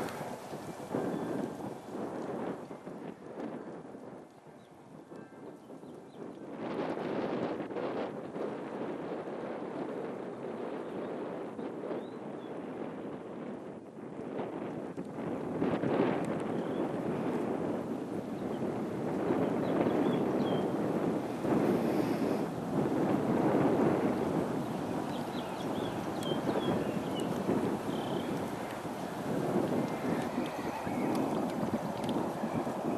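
Wind buffeting the microphone: a gusty, uneven rumble that drops away around four to six seconds in and builds up again over the second half.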